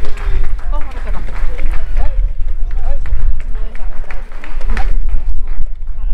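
Distant voices of players and spectators talking and calling out at an outdoor baseball game, over a steady low rumble of wind on the microphone.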